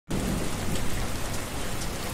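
Steady rain falling, an even hiss of drops on surfaces.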